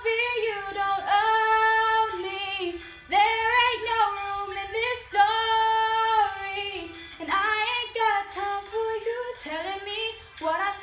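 A young female voice singing solo, holding long sustained notes with slides between pitches and few clear words, in an empowerment-style pop ballad.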